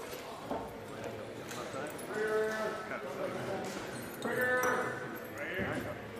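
Indistinct raised voices of soldiers calling out, with drawn-out calls about two seconds in and again around four and a half seconds. Short clicks and rustling come from parachute harnesses and gear being handled.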